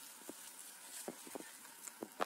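A few faint, short taps and rustles, scattered about a second apart, as a baby monkey crawls off its mother onto a mossy rock.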